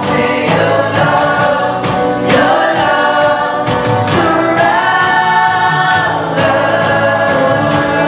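Live worship song: women singing the melody into microphones over strummed acoustic guitar and a band, with a steady beat.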